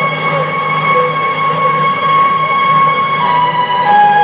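Slow instrumental music with long held notes, heard from an AM broadcast on an Icom IC-R75 communications receiver. The notes step to new pitches about three seconds in and again near the end. The narrow AM audio cuts off all the high sounds.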